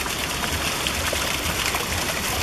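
Runoff water running steadily in a roadside gutter beside broken cobblestone paving: household wastewater that comes straight onto the street for lack of drainage pipes and sanitation.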